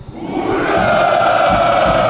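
Massed ranks of parade troops shouting a long, drawn-out "hurrah" ("ura") in unison, answering the parade commander's congratulation. It swells in over the first half second and is then held loud.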